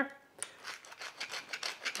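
Pepper mill being twisted to grind pepper into a bowl: a quick run of rasping, grinding clicks starting about half a second in.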